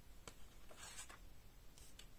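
Faint handling of a paper card set into a clear plastic card stand: a soft tap about a quarter-second in and a brief papery rustle about a second in.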